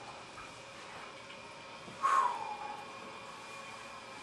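A man's single short, sharp breath noise about two seconds in, over a faint steady high whine.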